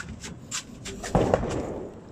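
A few sharp clicks and knocks, with a louder thump a little over a second in that dies away over about half a second.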